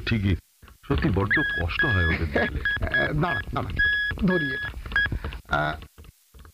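Morse-code beeps: a single high tone keyed on and off in short and longer marks, like a telegraph signal, under men's voices talking.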